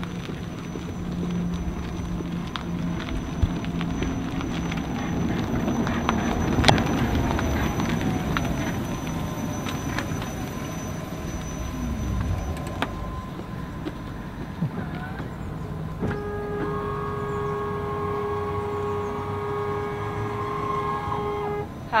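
Renault Trezor electric concept car driving past, mostly tyre and road noise, with a pitch glide as it passes about a third of the way in. In the last few seconds a steady whine holds, then cuts off suddenly just before the end.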